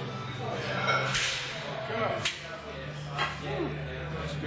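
Three sharp knocks or slaps about a second apart over a steady low hum, with low voices in between.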